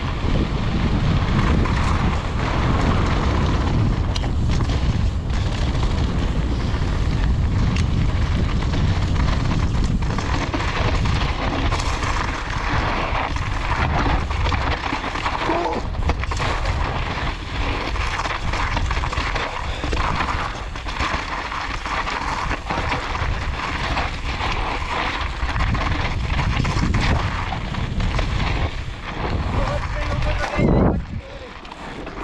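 Mountain bike descending a rocky dirt trail: steady wind rumble on the camera microphone, with the crunch of tyres on loose gravel and many clicks and knocks as the bike rattles over stones.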